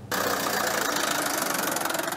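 Tractor engine running steadily, starting abruptly about a tenth of a second in, with a fast even firing beat.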